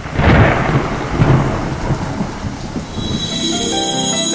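Thunder sound effect: a crack right at the start, then a rolling rumble with a second loud peak about a second in, dying away near the end as music comes back in.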